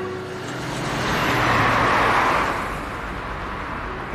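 A car passing by on a city street: a rush of road noise that swells to its loudest about two seconds in and then fades, over a low traffic rumble.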